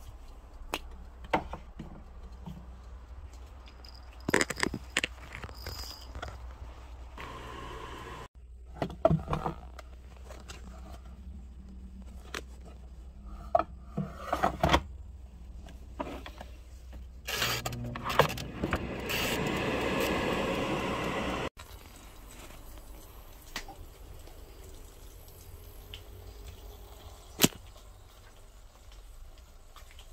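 Handling of a countertop air fryer: scattered knocks, clicks and clatter of its basket and body being moved and its timer dial being turned. About two-thirds of the way in, a steady rushing noise runs for a couple of seconds and cuts off suddenly. A single sharp knock follows near the end.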